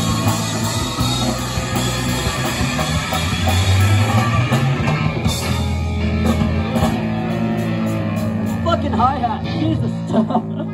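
Live rock band playing through amplifiers: electric guitars and a drum kit, loud and dense. A voice rises above it near the end.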